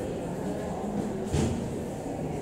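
A single sharp knock about one and a half seconds in as a step is taken up a stair on crutches, over low stairwell background noise.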